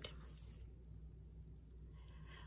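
Faint stirring of a thick blue pigment paint mix with a palette knife in a plastic cup, strongest in the first half-second, over a low steady hum.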